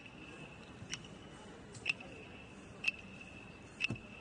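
Clapsticks struck in a slow, steady beat, four sharp, bright clicks about a second apart, keeping time for an Aboriginal unity dance.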